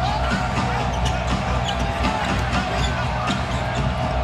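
A basketball being dribbled on a hardwood arena court, with arena music's steady bass playing underneath.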